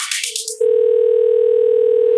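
Electro house music muffles and fades out, then a steady telephone dial tone comes in about half a second in and holds unbroken, a sample in the track's break.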